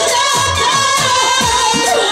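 A woman singing a jatra song into a microphone with the live band: clarinet and drum. The drum's low strokes slide down in pitch, two or three a second, under the wavering sung line.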